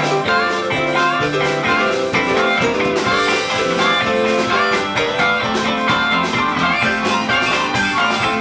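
Live band playing an instrumental passage, with electric guitar over bass, drums and keyboard.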